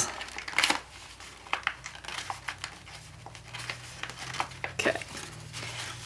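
A sheet of letter-size paper being folded and handled by hand while an origami box is shaped: scattered crinkles, soft rustles and small paper clicks. A faint low hum joins about two seconds in.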